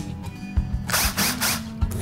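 Power drill whirring in a few short bursts about a second in, over music with a low, pulsing beat.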